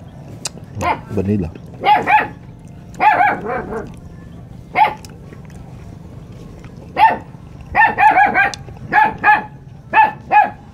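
A dog barking off and on, with single barks and quick runs of three or four barks, the busiest run about eight seconds in.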